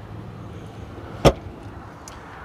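A single sharp click-thump about a second in, the Dodge Charger's folding rear seatback latching into place, over a low steady hum.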